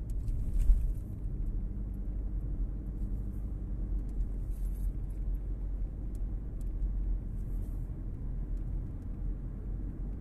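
Steady low rumble of a car's engine and tyres on the road, heard from inside the cabin while driving. A brief louder thump comes a little under a second in.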